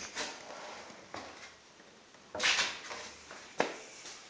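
A person climbing down a pine bunk bed's ladder side: a few knocks and thumps of feet and hands on the wooden rails, the loudest about two and a half seconds in, and a sharp knock near the end.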